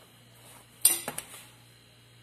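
Large metal spoon knocking against a plastic mixing bowl: one sharp clink a little under a second in, followed by two lighter taps.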